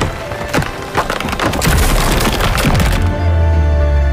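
Animated sound effect of a rope being yanked up through the ground: a rapid run of cracks and splintering as earth and rocks are torn loose, over music. About three seconds in, the cracking stops and a deep, steady low drone in the music takes over.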